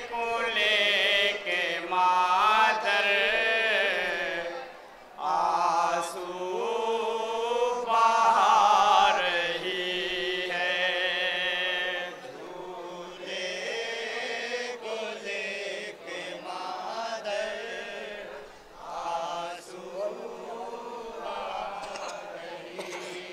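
A male voice reciting a noha, the Muharram lament, in long, melodic, chant-like phrases. It is louder in the first half and softer after about twelve seconds.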